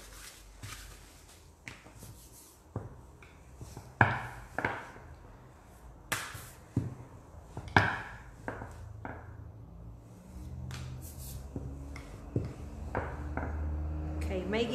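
A few sharp knocks and taps of things being handled and set down on a worktable, the loudest about four seconds in and near eight seconds, as a sheet of fondant is handled on a silicone mat. A low steady hum comes in for the last few seconds.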